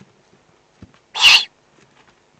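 A single short, harsh rasping hiss from a Eurasian eagle owl at the nest, a little over a second in, with faint scattered ticks around it.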